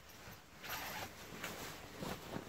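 Faint rustling of a Snugpak synthetic sleeping bag's fabric as hands pull and bunch its reinforced foot end, growing a little about half a second in.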